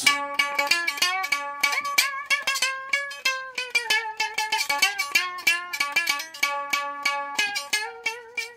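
A homemade four-can canjo, a one-string diddley bow with a single .016 plain steel guitar string on a stick over four small tin cans, played with a pick. It plays a quick run of picked notes, several a second, with notes gliding under a metal slide.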